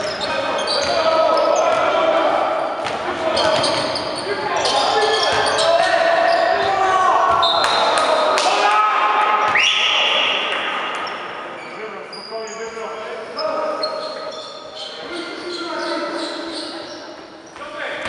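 Basketball game sounds echoing in a sports hall: the ball bouncing, sneakers squeaking on the wooden court, and players' and spectators' voices. A referee's whistle sounds about eight seconds in, and the hall grows quieter after it.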